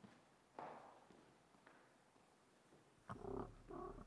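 Mostly near silence with a faint rustle, then near the end a man's low, short voiced sound in two parts, picked up close to the lectern microphone, with a low hum under it.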